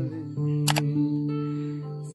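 Acoustic guitar accompaniment with sustained notes ringing under a held vocal note. About two-thirds of a second in there is a single sharp click, a mouse-click sound effect.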